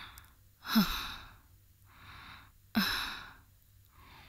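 A woman's heavy, audible breathing: a drawn-in breath followed by a sighing exhale with a brief voiced catch, repeated twice about two seconds apart.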